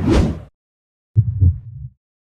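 Sound effect for an animated logo: a short whoosh with a low boom at the start, then about a second later a low double thump like a heartbeat.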